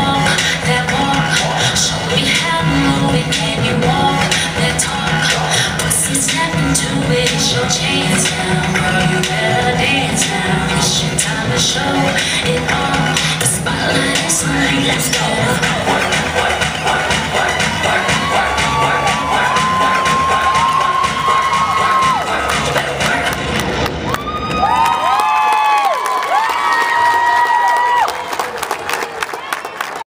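Loud dance-routine music with a steady beat, joined by crowd cheering and high-pitched screams and whoops; the music stops about 25 seconds in, leaving the cheering and screaming, which drops off near the end.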